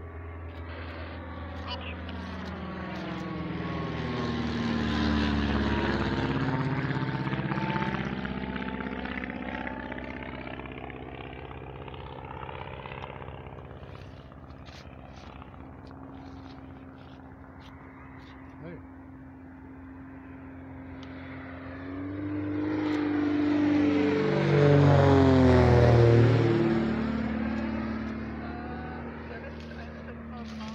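Two light propeller aircraft fly low overhead one after the other. Each engine drone swells as it approaches, drops in pitch as it passes and fades away. The second pass, near the end, is the louder.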